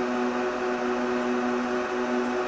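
Computer cooling fans running steadily: a constant hum with a couple of steady tones over an even hiss.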